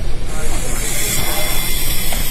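WL V388 3.5-channel radio-controlled helicopter's electric motor and rotors whirring in flight, a steady hiss that comes in strongly just after the start.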